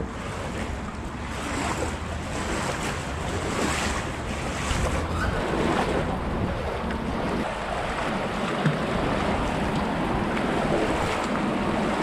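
Shallow, fast river water rushing and splashing close to the microphone as someone wades through it, with wind buffeting the microphone. The sound is steady, with a few brief louder surges of splashing.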